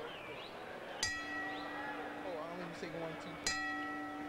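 Boxing ring bell struck twice, about two and a half seconds apart, each stroke ringing on and fading slowly: strokes of a ten-bell memorial salute.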